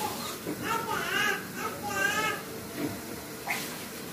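A high-pitched voice, like a child's, speaks briefly in the background, over a faint steady hiss.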